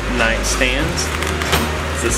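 Speech, with music underneath and a single sharp click about one and a half seconds in.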